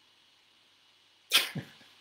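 A man's short burst of laughter: one sudden breathy outburst a little over a second in that fades quickly.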